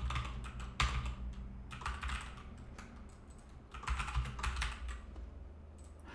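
Computer keyboard typing in a few short bursts of keystrokes, with a low steady hum underneath.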